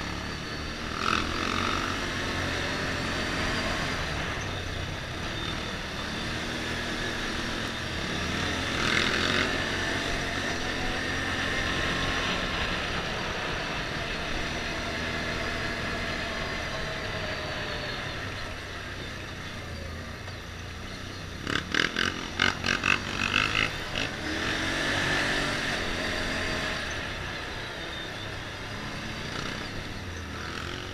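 ATV engine running as it rides over paved streets, its pitch rising and falling slowly with the throttle. About two-thirds of the way through comes a quick run of sharp knocks, the loudest sounds in the stretch.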